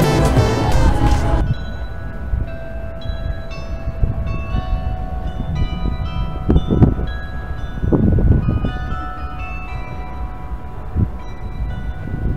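Loud fairground ride music cuts off about a second and a half in. Fainter fairground music with bell-like tones follows, over a low rumble broken by a few thumps.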